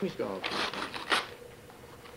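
Wrapping paper rustling and tearing in a few quick rips between about half a second and just over a second in.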